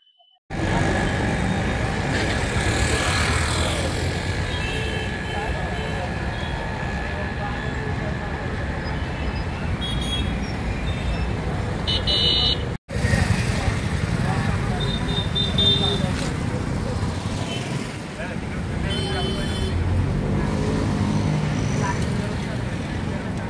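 Street traffic with motorcycles going past and a few short vehicle horn toots, over indistinct voices.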